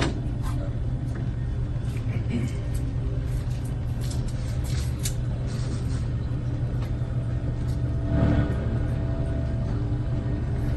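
Steady low rumble of room noise, with a few faint clinks scattered through.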